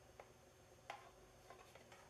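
Near silence broken by a few faint, short clicks, the loudest about a second in: the DC power plug being pushed into the back of a Toshiba Libretto 100CT laptop and its plastic case being handled.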